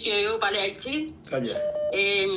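A person talking, with a short, steady electronic beep near the end.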